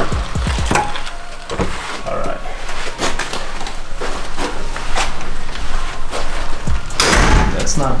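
Hotel room door being unlocked and pushed open: a string of clicks and knocks from the lock, handle and door, with a louder burst of noise near the end.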